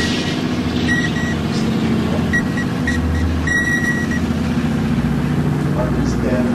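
A steady low droning hum, with short high beeping tones breaking in and out over the first few seconds.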